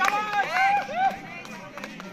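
Several people shouting in high, rising-and-falling calls as a volleyball rally plays out. The shouts die away about a second in, leaving scattered sharp knocks.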